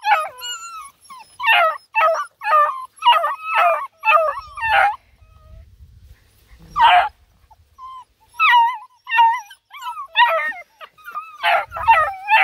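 Black and Tan Coonhound puppies yelping and whining: a rapid run of short, high-pitched cries, a pause, one longer cry about seven seconds in, then another run of cries.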